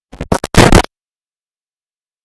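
A brief, loud burst of scratchy noise in the first second: a few quick scrapes, then a louder one lasting about a third of a second.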